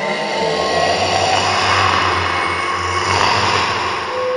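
Horror soundtrack sound effect: a loud, harsh noise swell with a steady low hum beneath, easing off near the end as ringing tones come back in.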